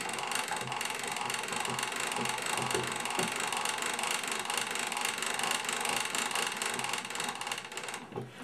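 A 1921 Zonophone wind-up gramophone's double spring motor being wound by its hand crank: a rapid, steady ratcheting click that stops near the end.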